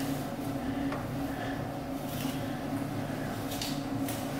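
A comb being pushed back through hair to tease it, giving a few faint scratchy rustles over a low steady hum.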